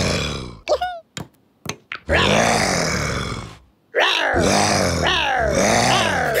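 Cartoon lion character laughing in a deep voice, in long stretches of laughter with a short break about a second in and another pause near the middle; a few short higher-pitched sounds and clicks fall in the first break.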